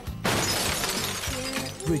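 A sudden crash just after the start, with a hissing ring that fades over about a second, laid over steady trailer music.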